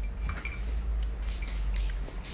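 Metal teaspoon clinking against a ceramic mug of milk tea: several light, irregular clinks over a low rumble.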